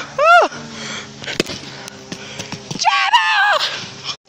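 A person's high-pitched voice: a short squeal that rises and falls at the start, and a longer wavering high cry about three seconds in, with a sharp click between them.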